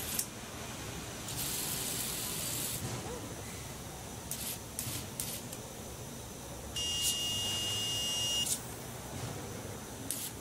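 Disinfection robot's sprayers hissing as they mist sanitizing solution for about a second and a half, followed by a few short spray puffs. Near the end comes a steady high electronic whine lasting nearly two seconds, the loudest sound here.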